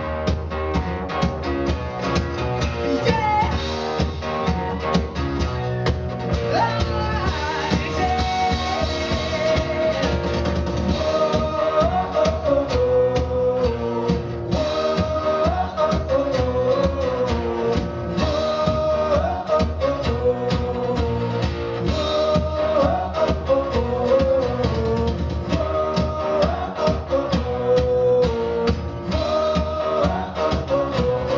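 Live rock band playing at full volume: drum kit and guitar driving a steady beat under a male lead vocal sung into a handheld microphone.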